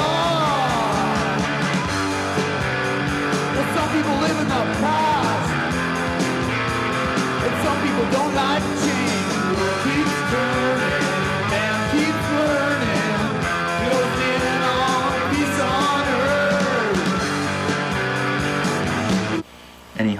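Rock band music with guitar, playing loudly and then cutting off suddenly shortly before the end.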